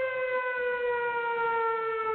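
Siren-like sound effect in a DJ competition remix: one long, steady wail that slowly sinks in pitch.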